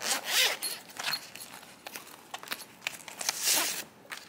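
Two quick zipper pulls on a clear plastic pouch, one at the start and one near the end. Light clicks and rustles of paper and plastic fall between them.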